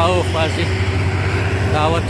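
Loaded heavy diesel trucks climbing uphill, their engines running with a steady low rumble. A man's voice speaks briefly at the start and again near the end.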